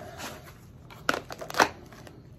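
Polymer AK magazine sliding into a Kydex insert in a plate carrier's kangaroo pouch, with light scraping and two sharp plastic clicks about half a second apart in the second half.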